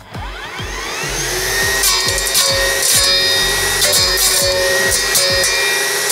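Greenworks GD24X2TX cordless brush cutter spinning up with a rising whine over the first second or so, then running at a steady high whine as its metal blade cuts through dry, woody bamboo canes with quick sharp clacks. Background music with a steady beat plays underneath.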